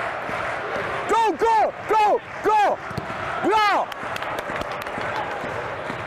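A man shouting in Swedish: four short calls of 'Gå!' in quick succession, then a longer 'Bra!', over steady stadium background noise.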